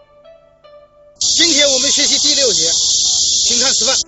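A loud, steady hiss starts suddenly about a second in, with a voice rising and falling in pitch over it, and both cut off abruptly at the end.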